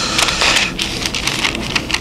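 Thin Bible pages being turned and leafed through, a run of quick, crackling paper rustles.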